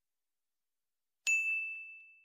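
A single high, clear bell ding, the notification-bell sound effect of a subscribe animation, struck about a second and a quarter in and ringing out as it fades.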